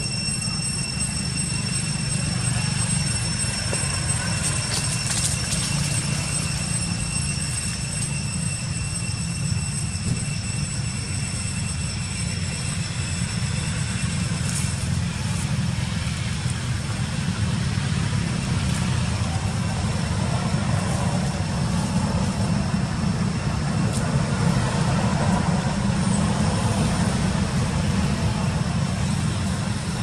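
Steady low rumble with faint, thin high-pitched tones above it, and no clear single event.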